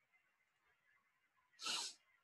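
A short, sharp burst of breath from a person close to the microphone, about a second and a half in and lasting under half a second.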